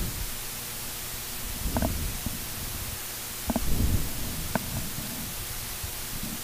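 Steady hiss of an open broadcast microphone, with a few faint muffled rumbles and knocks about two and four seconds in.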